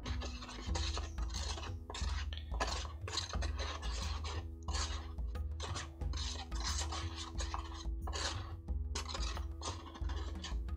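Plastic spoon scraping round the inside of a plastic tub, stirring wet plaster into a batter-thick slurry, in repeated strokes about two to three a second.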